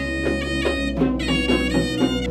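Traditional Sri Lankan dance music: double-headed geta bera drums beating a rhythm under a high, reedy wind-instrument melody played in long held notes.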